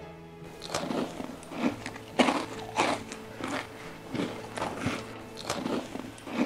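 A person noisily crunching and chewing a crunchy snack, roughly two loud crunches a second starting about half a second in, over soft background music.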